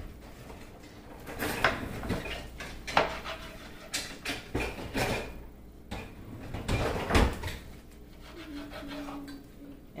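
Knife cutting lemons on a plastic cutting board: irregular knocks and taps of the blade striking the board.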